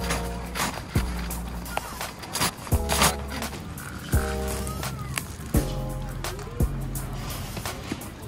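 Background music: short chords repeating about every second and a half over a steady bass, with a regular beat.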